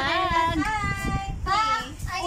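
A high singing voice holding long, wavering notes.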